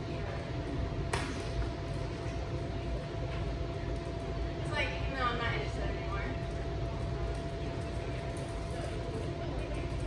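Steady room hum with a thin electrical tone under it, a sharp click about a second in, and around the middle a brief, high-pitched voice calling the dog back for a recall.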